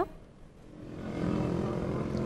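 Road traffic with a steady engine hum, rising out of near quiet during the first second and then holding steady.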